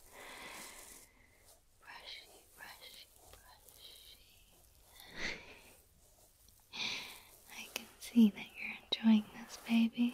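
Close-miked female whispering for an ear-brushing ASMR session, with soft breathy stretches and a few short voiced sounds near the end. Faint makeup-brush strokes on the microphone are likely mixed in.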